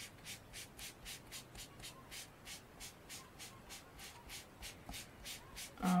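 Faint, rhythmic scrubbing of a round foam ink blending tool rubbed quickly over cardstock, about four strokes a second, working ink into the paper.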